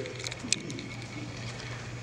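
Room tone of a large hall during a pause in a talk: a steady low hum with a few faint clicks, the sharpest about half a second in.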